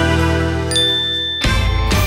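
A bright ringing chime with a high sparkling tone over background music. The chime ends about one and a half seconds in and the music carries on.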